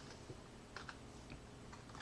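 Low room tone with a few faint, scattered computer keyboard clicks.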